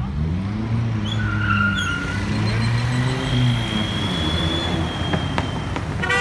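An SUV's engine pulling away, its pitch rising at the start, then running steadily and dying away after about three and a half seconds.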